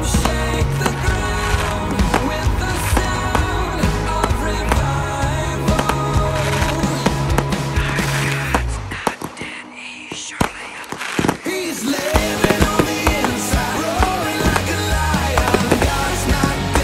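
Music playing loudly along with fireworks being fired: sharp launch and burst reports over the music. About nine seconds in the music drops away for a couple of seconds, leaving a few separate sharp bangs, then comes back in.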